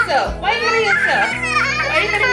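A young boy laughing and squealing, with a woman's voice, over background pop music with a steady bass line.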